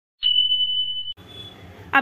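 A single steady high-pitched electronic beep, just under a second long, cutting off abruptly: the sound effect of a subscribe-button animation. Faint background noise follows.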